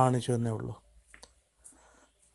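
A man speaking briefly, then a few faint, sharp clicks.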